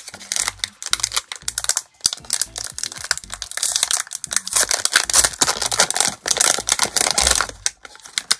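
Clear plastic wrapper crinkling and crackling as it is handled and opened by hand to pull out a roll of washi tape, a dense run of quick crackles that is loudest in the middle and eases off near the end.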